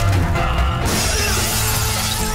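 Action-film background score with a heavy low beat, cut through about a second in by a sudden bright crash sound effect that fades within about a second.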